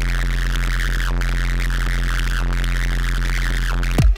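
Electronic music: a steady, sustained deep bass drone under a wavering, pulsing synth tone, with no beat. It breaks off sharply at the end.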